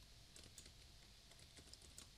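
Near silence with a few faint computer keyboard key clicks.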